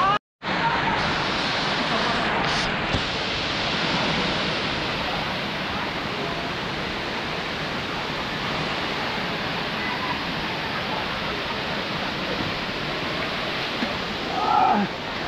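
Steady rush of water from the Erawan waterfall's limestone cascades, a constant even noise after a short break at the very start.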